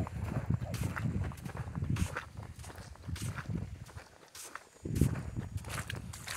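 Footsteps on beach sand, about two steps a second, with a low rumble beneath and one heavier step about five seconds in.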